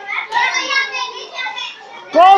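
Young children's voices chattering and talking over one another, no single clear speaker.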